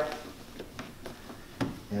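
Faint handling clicks and taps as a Polaris Ranger XP 1000's plastic hood panel is pressed into place, with one sharper click near the end.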